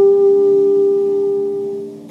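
Saxophone holding one long, steady note that fades away near the end, over a softly sustained acoustic guitar chord.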